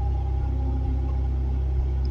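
Dark ambient background music: a steady low drone with a faint held higher tone above it.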